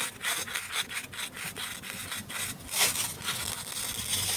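Halves of a plastic toy peach rubbed and pressed against each other in the hands, a rough scratchy sound of many quick short strokes, one louder stroke a little before the end.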